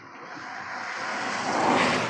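A car passing on a wet asphalt road: hissing tyre and engine noise swells as it approaches, peaks near the end, then starts to fade.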